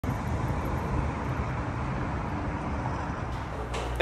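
City traffic noise, a steady wash of sound without distinct events.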